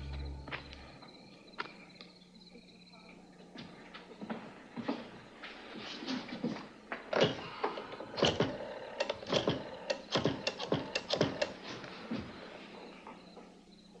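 Irregular clicks and light knocks of a desk telephone being handled and dialled, sparse at first and coming thick and fast from about four seconds in, then thinning out near the end.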